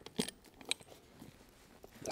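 Two soft metallic clinks from steel tire chain links being worked tight on a tire, then only faint handling noise.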